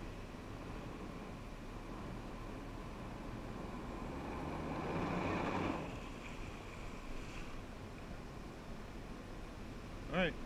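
Personal watercraft engine running steadily, heard with wind on the microphone. A rush of water noise swells about four seconds in and dies away near six seconds as the Flyboard's water jets throw up spray.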